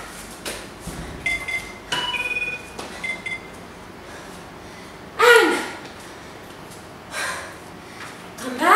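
A woman breathing hard through a set of burpees. A loud voiced exhale falls in pitch about five seconds in, and a breathier one comes near the end. A few light knocks and short high squeaks of her movement on the mat come a second or two in.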